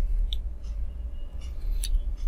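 A few sharp clicks of a computer mouse being worked while a document is scrolled, about four in two seconds, the loudest near the end, over a steady low hum.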